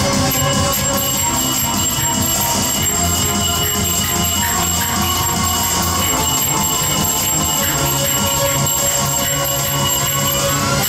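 Finger cymbals (zills) clanging in a steady rhythm over loud dance music.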